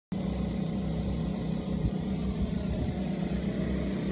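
A steady low mechanical rumble and hum.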